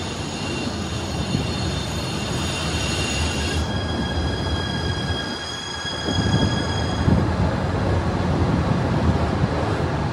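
A Rhein-Ruhr-Express Siemens Desiro HC double-deck electric multiple unit rolling past along the platform. A high-pitched whine of several steady tones shifts to a new pitch just over three seconds in and fades out around seven seconds in, while the low rumble of the wheels on the rails grows louder from about six seconds in.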